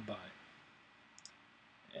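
A man's voice ends a word, then a pause of quiet room tone broken by a faint click a little over a second in.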